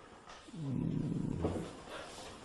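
A man's quiet, low, creaky drawn-out voice sound, a hesitation noise made while searching for words, starting about half a second in and lasting about a second.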